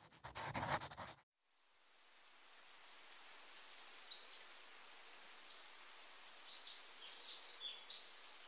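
Faint outdoor ambience: a short noisy burst in the first second, then a soft hiss with small birds chirping in short, high-pitched bursts from about three seconds in.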